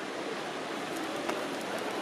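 Steady outdoor background noise of a busy paved city square, an even hiss with a couple of faint clicks about a second in.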